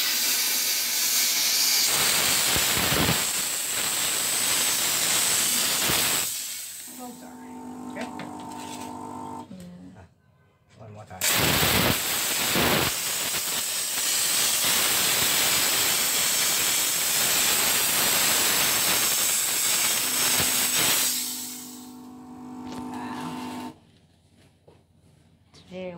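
Canister steam cleaner's narrow lance nozzle jetting steam onto floor-tile grout: a loud hiss for about six seconds, then after a short pause a second, longer hiss of about ten seconds. A steady low hum fills the gaps between the jets.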